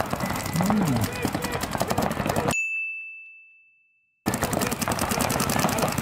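Rapid, continuous popping of several paintball markers firing at once during a match, with a brief shout early on. The firing fades out a little past halfway, a single high ding rings in the silence, and the firing cuts back in abruptly about a second and a half later.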